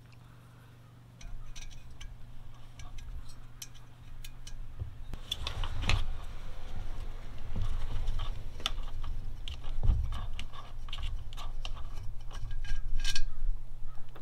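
Hands working the parts of a diesel air heater being taken apart: many small irregular clicks and rattles of metal and plastic pieces and wiring.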